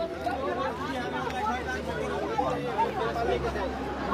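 Several men's voices talking over one another: group chatter, with a steady low hum underneath.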